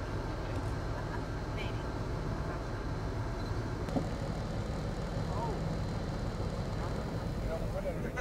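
Steady low rumble of a moving tour bus heard from inside the cabin, with faint passenger voices over it and a single short click about halfway through.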